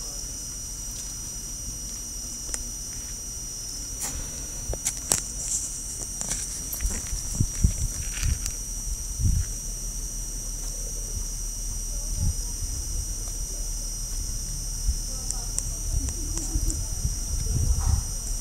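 Rabbits scuffling and digging in loose soil close by: scattered light scratches and soft thumps, busiest a few seconds in and again near the end, over a steady high-pitched whine.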